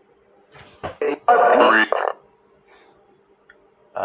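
Short, garbled voice-like fragments from the Necrophonic ghost box app playing through a small speaker. The loudest is a brief burst about a second and a half in, over a faint steady hum.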